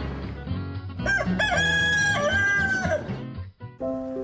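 A rooster crowing once, a cock-a-doodle-doo lasting about two seconds, over background music. A different tune starts near the end.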